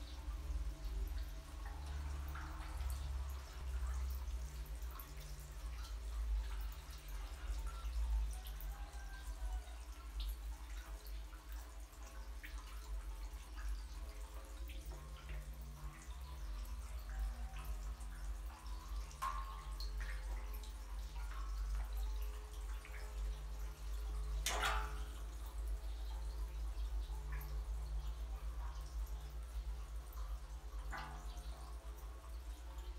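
Water dripping and lightly splashing in a jar pond of young catfish, over a steady low hum. One sharper, louder splash comes about three-quarters of the way through.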